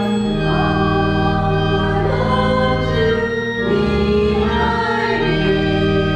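Church choir singing a slow hymn with organ accompaniment: long held chords that change every second or two.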